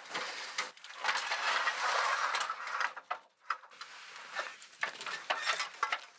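Hands working on the floor of a green wire-mesh box trap for lynx as it is set: a scraping, rustling noise for about two seconds starting about a second in, then scattered light clicks and knocks from the trap's metal mesh and frame.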